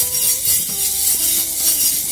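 A pair of brass kai silambu (hollow hand rings) shaken in both hands, jingling in a steady rhythm of about four shakes a second.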